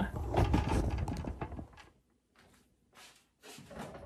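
Handling noise from the camera being tilted down: rubbing and knocks for about the first second and a half, then a near-silent gap, then a few soft clicks near the end.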